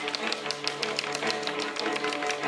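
Live chamber music from a small string ensemble of violins and cello: a quick, even run of short crisp notes, about six a second, over held lower notes.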